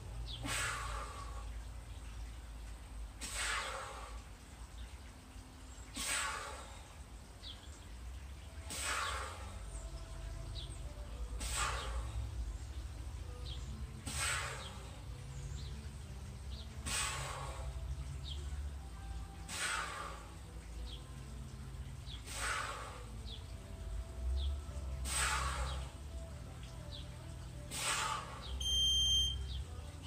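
A steel clubbell swung through repeated side mills, with a whooshing rush of air about every three seconds, one per rep. Near the end an interval timer beeps to end the set.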